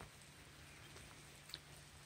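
Near silence: faint outdoor background, with one small click a little past the middle.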